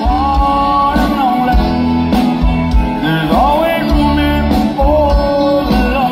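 Live country band music between sung lines: a melody that slides in pitch over a steady bass and drum beat.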